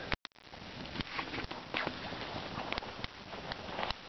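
Wood campfire burning, with scattered sharp crackles and pops over a steady hiss.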